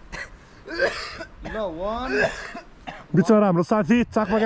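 A person clearing their throat with hoarse, cough-like rasps, with a short voiced sound between them whose pitch dips and rises. Near the end a man says "shut up".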